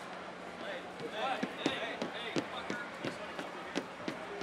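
Footsteps and knocks on backstage stage decking, a string of short uneven thuds about two or three a second, starting about a second in, over indistinct voices.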